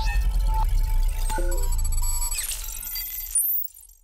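Short logo jingle: a few melodic notes over a deep low rumble, with a rising whoosh and glittering high chimes about two and a half seconds in, cutting off shortly before the end.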